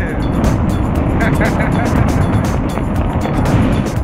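Wind buffeting the camera microphone during a tandem parachute descent under an open canopy, a steady rumble with gusty spikes.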